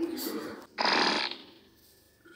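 A fart sound, loudest and longest about a second in, after a shorter noise at the start.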